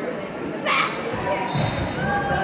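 Youth box lacrosse play on a hard sport-court rink: players' and spectators' voices calling out in an echoing arena, with a sharp clack or shout about two-thirds of a second in.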